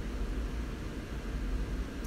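Steady low hum and hiss of room background noise, with no distinct event.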